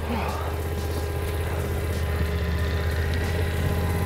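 A motor vehicle's engine running steadily at low speed, a constant low hum with a faint steady whine above it.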